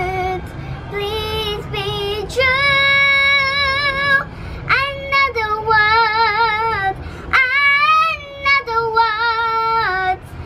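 A young girl singing solo, holding long notes with a clear vibrato across several phrases.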